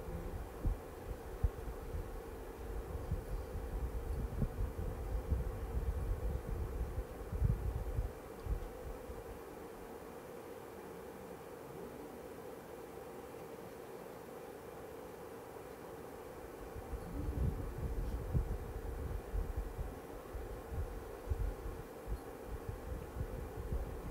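A steady faint electrical hum with irregular dull rumbles and bumps from movement and handling close to the microphone, which die away about eight seconds in and return for the last few seconds.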